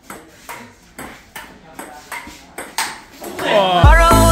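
Table tennis rally: a ping-pong ball clicking sharply off paddles and the table, roughly two hits a second. Near the end, a voice shouts out with a rising pitch.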